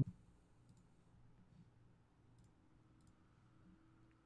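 A few faint, separate computer mouse clicks over quiet room tone with a low steady hum.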